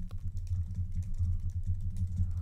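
Fast typing on a computer keyboard: a quick, continuous run of key clicks.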